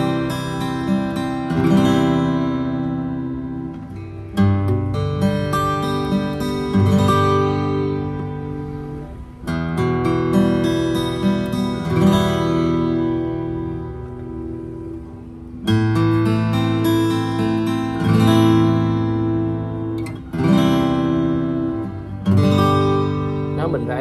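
Yamaha FG-301B steel-string acoustic guitar with rosewood back and sides, fingerpicked: chords arpeggiated gently one after another, a new chord every few seconds, each left to ring and fade. The tone is bright, even and resonant.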